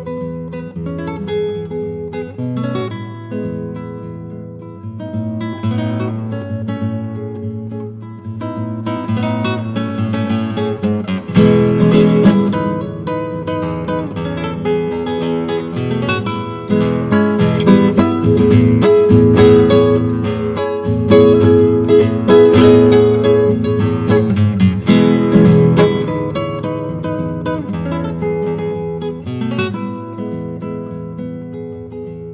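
Solo classical guitar playing: a gentler plucked passage at first, then from about ten seconds in louder and busier with quick repeated strokes, easing off again near the end.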